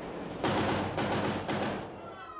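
Close gunfire: rapid rifle shots in bursts, loudest from about half a second in and easing off near the end.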